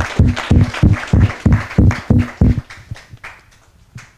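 Audience applause, evenly paced at about three claps a second, dying away about three seconds in at the end of a talk.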